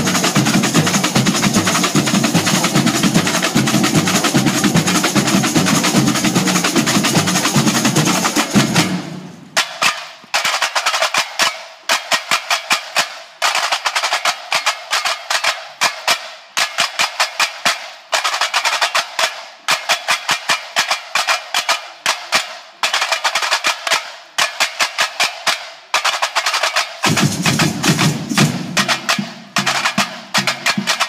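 Samba batucada drum ensemble playing together, with the bass of the surdo drums under it. About nine seconds in the bass drops out and only tamborims play, sharp clipped stick strokes in rhythmic phrases with short breaks between them. The full drum ensemble comes back in near the end.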